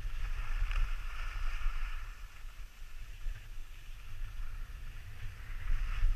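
Wind buffeting an action camera's microphone as it moves down a ski slope, with a steady low rumble, over the hiss of skis sliding on snow. The hiss dies down in the middle and comes back near the end.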